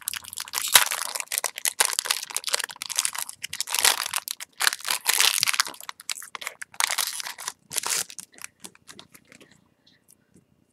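Foil wrapper of a trading-card booster pack being torn open and crinkled by hand: a dense run of crackling and crinkling that thins out about eight seconds in.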